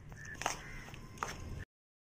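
Steel spoon stirring milk into crumbly gulab jamun mix in a ceramic bowl, with two sharp clinks of the spoon against the bowl, over a low hum. The sound cuts off to dead silence shortly before the end.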